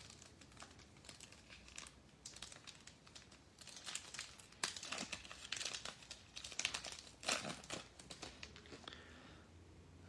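Plastic wrapper of a football trading card pack crinkling and tearing as it is opened by hand, in faint scattered crackles that grow busier in the middle and die away near the end.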